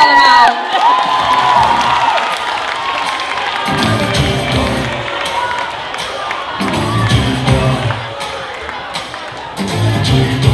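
Audience cheering and shouting over a live band. A held vocal note sounds at the start, and drums and bass come in with a driving beat about four seconds in.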